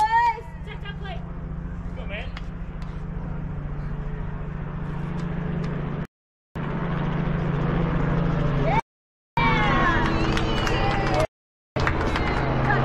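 Spectators' and players' voices over a steady low hum, with the audio cutting out completely three times, briefly, in the second half.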